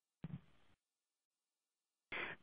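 Near silence: the audio line drops to dead silence, with one brief faint sound just after the start.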